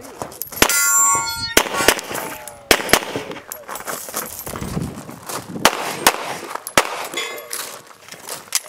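Handgun shots fired in short strings at irregular intervals, with a pause in the middle while the shooter moves. Right after the first shot a metallic ringing sounds for under a second.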